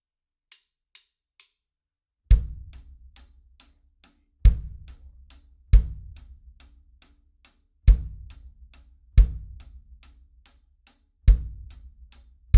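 Drum kit hi-hat playing steady eighth notes with the bass drum kicking on beat one and the 'and' of three, the hi-hat and bass drum part of a slow rock groove, with no snare. A few light ticks count it in before the beat starts about two seconds in.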